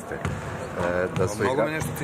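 Speech: a voice talking in the echo of a large sports hall.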